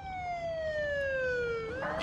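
Police car siren wailing: one long tone sliding slowly down in pitch, then turning to rise again near the end.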